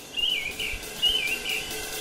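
A songbird singing short, wavering whistled phrases, about two a second, over faint woodland background.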